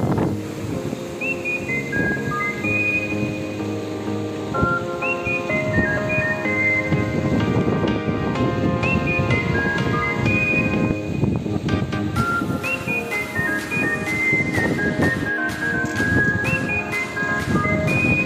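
Background music: a high melody of short held notes, each phrase opening with a little upward slide and repeating about every four seconds, over a fuller accompaniment.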